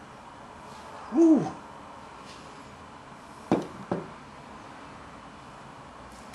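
A short hummed voice sound about a second in, then two sharp knocks less than half a second apart past the middle, as a heavy glass beer stein is set down on a stone worktop.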